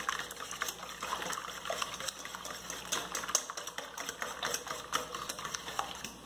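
Wire whisk beating eggs in a stainless steel bowl: a quick, continuous run of light clicks as the whisk wires strike the bowl, stopping right at the end.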